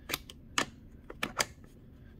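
Garden-hose quick-disconnect coupling being pushed onto a plastic foam-cannon fitting and its sleeve slid forward to lock: about five sharp clicks, the two loudest near the middle and about three quarters of the way through.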